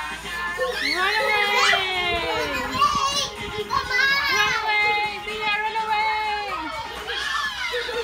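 Young children's voices calling and squealing in long sliding pitches over a children's song playing in the background, with the voices fading back near the end.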